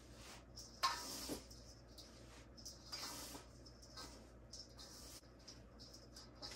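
Hands mixing dry potting soil and perlite in a stainless steel bowl: faint, uneven rustling, with one louder scuff about a second in.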